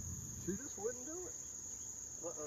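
A steady high-pitched drone runs throughout, with a man's voice speaking briefly and quietly about half a second in.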